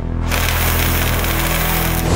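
Sound-design effect for a logo animation: a dense, steady rumbling noise with a low drone underneath, swelling over the first half second and then holding.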